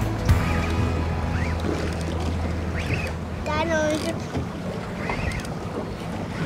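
Outboard boat engine idling, a steady low hum that weakens about four seconds in, with wind on the microphone.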